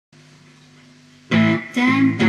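Guitar intro: a faint, held chord rings for the first second, then loud strummed chords start, two strums in quick succession.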